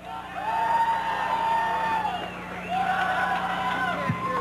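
Concert audience cheering, with two long drawn-out whoops rising over the noise, over a steady low hum.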